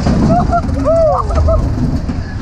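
Crazy Mouse spinning coaster car running along its track: a steady rumble with wind on the microphone, and several short rising-and-falling squeals, the longest about a second in.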